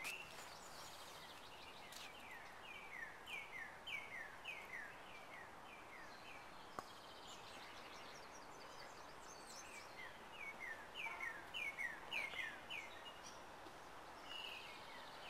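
A songbird singing: two runs of repeated down-slurred whistled notes, about three a second, over faint steady background noise, with a single faint click near the middle.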